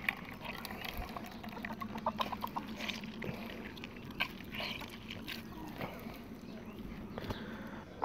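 Hands squeezing and kneading soaked oats in a plastic bowl of water, making irregular wet squishes, drips and small splashes as the starch is worked out into a milky oat wash.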